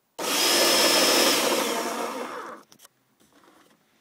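An 18-volt cordless drill motor spinning a cardboard minigun's barrel cluster through a small wheel and elastic-band drive, running in one burst of about two and a half seconds and then stopping. A thin high whine rides on the whirr for the first second. The band drive lacks grip, and the builder says it needs more elastic bands.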